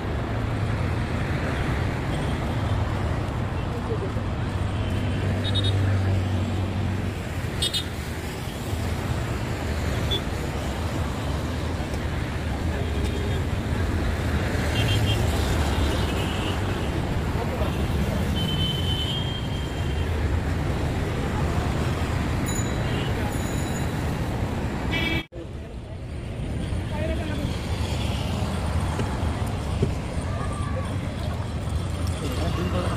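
Road traffic running steadily, with several short horn toots and indistinct voices of people close by. The sound cuts out for a moment near the end.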